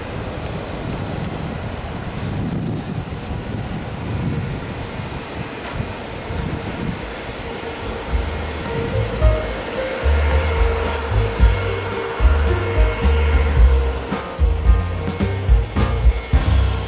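Steady rushing jet-engine noise from an Embraer E195 airliner, then from about eight seconds in, background music with a heavy steady drum beat that becomes the loudest sound.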